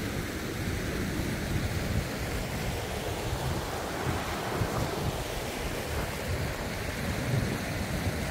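Wind buffeting the microphone in uneven gusts over the steady rush of a fast-flowing river running over rocks.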